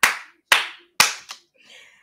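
A woman clapping her hands while she laughs: three sharp claps about half a second apart, then a lighter fourth.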